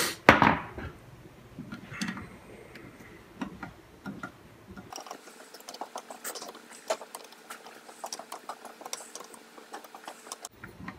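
Light metallic clicks and clinks of a small hand tool working the cover screws on a Tillotson HW27A kart carburettor during disassembly. There is a sharper knock about half a second in, and a rapid run of fine ticks through the second half.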